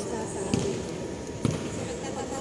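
A basketball bouncing on a hard outdoor court: two thuds about a second apart, under a murmur of voices.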